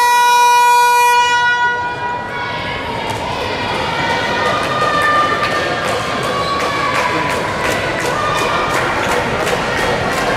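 Electronic timekeeper's buzzer sounding one steady tone that cuts off about a second and a half in, stopping play for a team timeout. It is followed by a gymnasium crowd's voices and rhythmic clapping.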